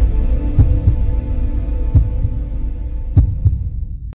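Cinematic intro sound design: a low drone fading slowly, broken by a few deep thumps, which cuts off abruptly at the end.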